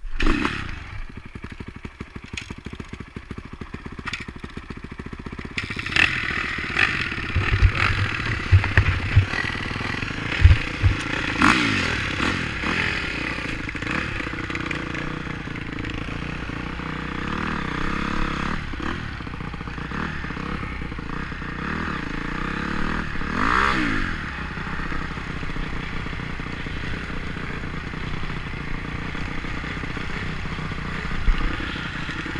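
Dirt bike engine starting suddenly, then running at low revs for a few seconds. The bike then rides off over a rough gravel trail, its revs rising and falling several times, with clattering and knocks from the bike over the rough ground.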